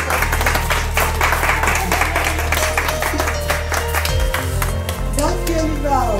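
A crowd clapping and applauding over background music with a steady bass line. Near the end the clapping thins and a melody comes forward.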